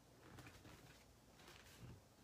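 Near silence: room tone with a few faint soft brushes and taps of bare feet stepping and pivoting on a wooden floor.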